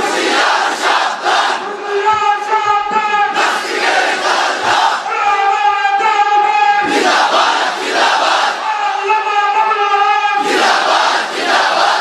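A large crowd of young men chanting slogans in call and response. A held, sung call alternates with four loud shouted replies from the crowd, about every three to four seconds.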